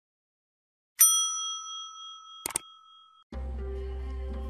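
Subscribe-button animation sound effect: a bright bell ding about a second in that rings and fades over about two seconds, with a quick double mouse-click sound partway through. Music starts near the end.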